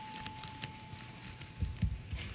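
The game show's signal chime, a single steady tone, dying away over the first second and a half. A few soft low thumps follow near the end.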